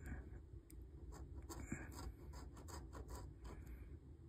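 A metal coin scraping the coating off a paper scratch-off lottery ticket in quick, irregular short strokes, faint.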